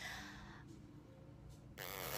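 Quiet room tone with a faint steady low hum, and near the end a short rush of breath as a woman puffs out her cheeks.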